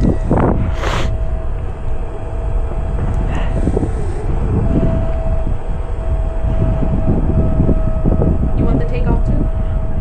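Gusty wind rumbling on the microphone, with a steady thin whine running underneath.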